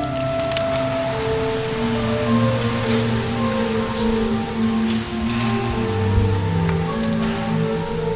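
Church organ playing slow, held chords. Over it come scattered clicks and shuffling from the congregation sitting down on wooden chairs on a stone floor.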